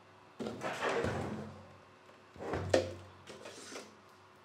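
A NAS drive tray being pulled out of its bay: a sliding scrape in the first second or so, then a sharp clack a little after halfway, followed by a few lighter knocks.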